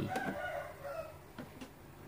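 A rooster crowing: one drawn-out call lasting about a second.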